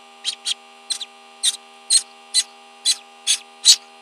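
Hatching duckling peeping: short high-pitched peeps repeating about two or three times a second, over a steady electrical hum.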